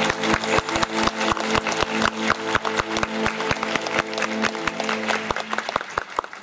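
Audience applauding with many distinct claps over a wind band's held closing notes, which stop shortly before the end while the clapping goes on.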